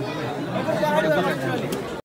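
Chatter of a crowd: several people talking over one another in a room.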